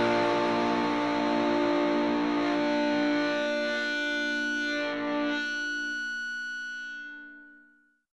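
Closing chord of a rock song on distorted electric guitar, held and ringing out while it fades away. The low notes drop out about five seconds in, and the rest dies away just before the end.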